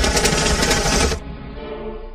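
Rapid pistol gunfire: a dense burst of many shots lasting just over a second, then stopping, over background music.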